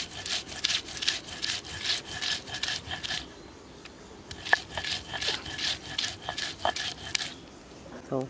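Stone roller scraping back and forth over chopped onion on a flat grinding stone (sil-batta), a rhythmic rasping of about three strokes a second. It comes in two bouts, with a pause of about a second near the middle and a stop shortly before the end.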